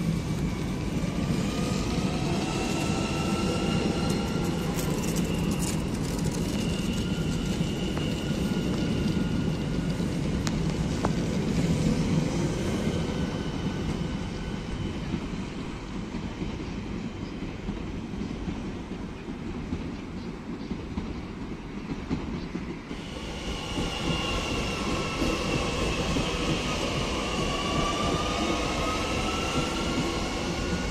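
Z 50000 Francilien electric multiple-unit trains running past: a steady rumble of wheels on rail with high whining tones that glide up and down in pitch. The sound eases off about two-thirds through, then changes abruptly to another passing train with the whining tones back.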